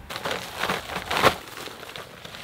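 A plastic bag crinkling and rustling as soil mix is tipped out of it into a bucket, with its loudest crackle a little past the middle.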